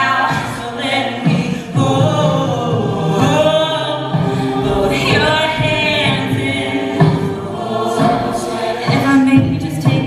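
Live mixed-voice a cappella group singing, with a female lead voice over sustained backing voices and no instruments.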